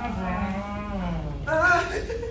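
A young man's voice holding a long, low drawn-out vowel that slowly sinks in pitch, followed by a shorter voiced exclamation near the end.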